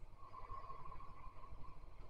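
A man's faint, drawn-out sniff through the nose at the rim of a glass of light lager, smelling its aroma, over a low steady room hum.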